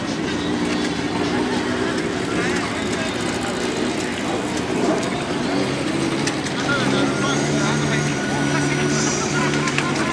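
Classic motorcycle engines idling steadily, with voices chatting over them; a lower, stronger engine note comes in about six seconds in.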